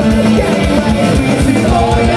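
Live heavy rock band playing loud: distorted electric guitars, bass guitar and pounding drums, with a male singer's vocals over them.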